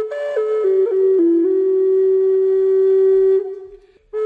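Intro music: a solo flute plays a few quick notes stepping down in pitch, then holds one long low note that fades out near the end. The phrase repeats.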